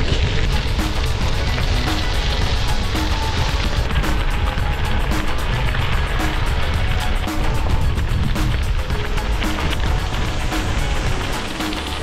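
Bicycle tyres rolling over loose gravel, a continuous gritty crackle, with heavy wind rumble on the microphone. Background music plays faintly underneath.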